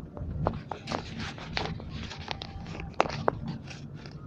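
Scattered close clicks and rustles of a hand-held phone being handled, over the steady low hum of a car interior.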